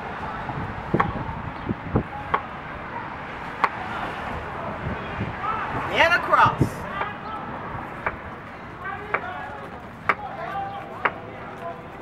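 Chef's knife chopping watermelon into large chunks on a cutting board: a string of sharp, irregularly spaced knocks as the blade comes down through the flesh onto the board.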